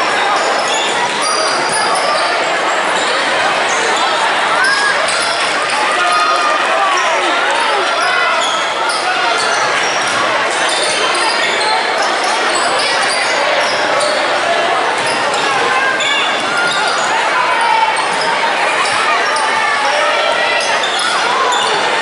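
Live basketball play in a school gym: a ball dribbling on the hardwood floor and sneakers squeaking as players cut and run, over voices of players and spectators, all echoing in the hall.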